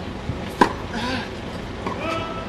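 A single sharp crack of a tennis ball struck by a racket, about half a second in, over a steady background murmur.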